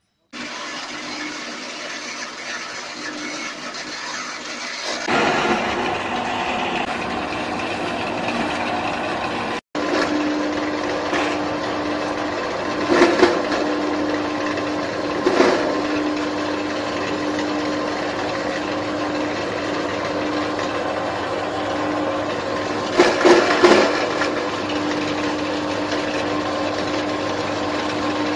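Electric chaff cutter running with a steady hum, with several louder rough bursts as carrots and potatoes are fed in and chopped. The sound breaks off briefly about a third of the way in.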